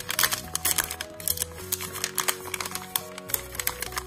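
Background music with held notes, over a stiff paper wrapper crinkling and rustling in a quick run of small clicks as it is folded around a toy burrito.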